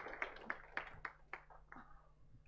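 Audience applause dying away: about seven scattered single claps, thinning out and fading near the end.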